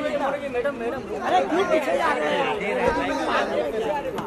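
Several voices talking and calling out over one another: the chatter of photographers crowding round.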